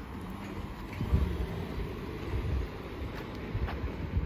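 Wind buffeting the microphone in uneven low gusts, strongest about a second in, over faint outdoor street ambience.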